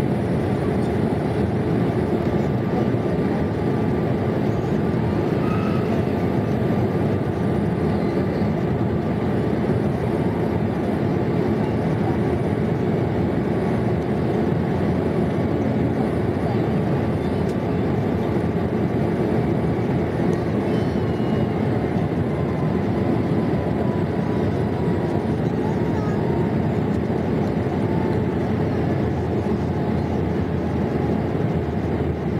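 Steady cabin noise inside a British Airways Boeing 787 Dreamliner in flight: a constant low rush of airflow over the fuselage and the Rolls-Royce Trent 1000 engines, unchanging throughout.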